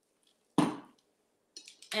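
A single sharp clink of tableware, dying away in under half a second.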